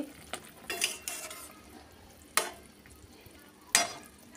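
A spatula stirring a thin fish curry in a metal kadai, scraping softly about a second in, with two sharp knocks against the pan, one about two and a half seconds in and one near the end.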